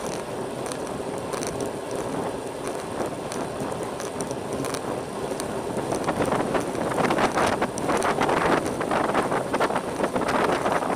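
Wind rushing over the camera microphone on a road bicycle riding at about 35 km/h, with the rolling noise of its tyres on the asphalt. The wind buffeting grows louder and gustier about six seconds in.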